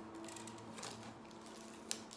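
Adhesive stencil being picked up with a pointed tool and peeled off a painted wooden tray: faint scratching and small ticks, with a sharp click just before the end.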